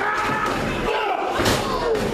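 A single sharp smack of a strike or body impact between two pro wrestlers in the ring about a second and a half in, over shouting voices from the audience.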